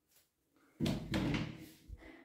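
A sudden thump about a second in, fading over about a second, with a smaller knock near the end: the sound of something being handled or shut in a small tiled bathroom.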